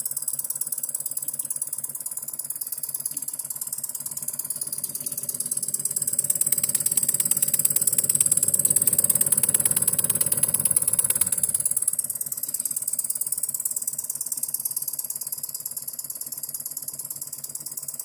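A live-steam model engine running and driving a small cast-iron model bandsaw through a thin belt: a fast, even mechanical clatter over a steady high hiss. It grows louder in the middle and eases off again.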